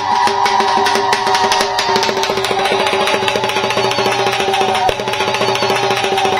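Traditional music led by a drum beaten in a fast, steady rhythm, with a sustained tone held over it.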